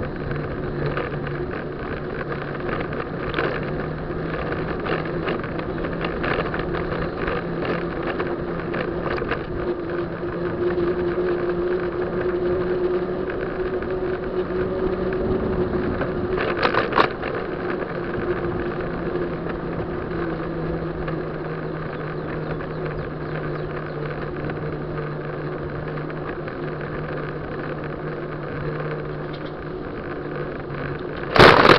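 A bicycle rolling along a paved street: steady tyre and road hum with frequent small rattles over the bumps, and one louder clatter about two-thirds of the way through.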